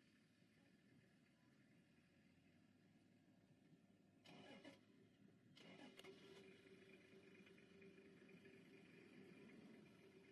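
Near silence: faint outdoor background noise, with two brief faint rustles around four and a half and six seconds in and a faint steady hum from about six seconds in.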